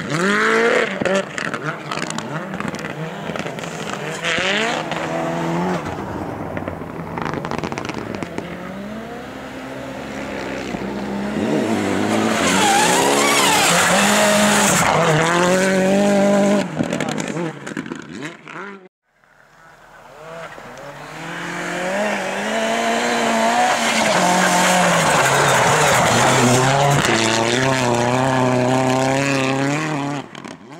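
Rally car engine revving hard through the gears on a snow sprint track, its pitch climbing and dropping back with each shift. The sound cuts out suddenly a little past halfway, then another run starts and builds up again.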